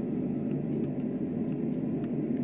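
Steady low rumbling hum with no distinct events.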